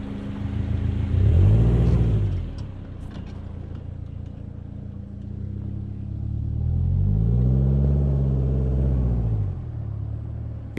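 Subaru Outback's flat-four boxer engine revving up and easing off twice as the car pulls away through loose sand. The first surge comes about a second in and is short; the second, longer one comes from about seven seconds in.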